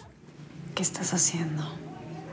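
Hushed, whispered voice starting about a second in, with a few sharp hissing sounds and a soft low hum under it.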